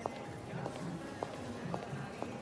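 Quiet film background score: a low, steady bed with a soft, regular tick a little under twice a second.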